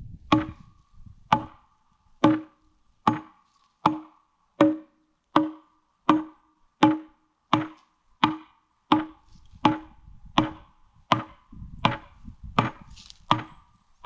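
Axe blows into a well-seasoned pine timber as it is scored and hewn, a steady rhythm of about one sharp chop every three-quarters of a second. Each blow carries a short ringing note.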